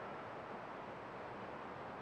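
Steady, faint outdoor background hiss with no distinct events.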